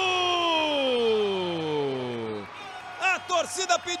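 A man's long drawn-out celebratory cry for a futsal goal, held for about two and a half seconds and sliding steadily down in pitch, followed near the end by a few short excited syllables.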